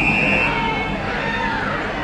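A short, steady umpire's whistle blast at the start, followed by open-ground ambience with faint distant shouts from players.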